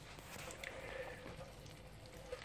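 Faint sizzling of meatballs frying in oil in an electric skillet, with a faint steady hum underneath.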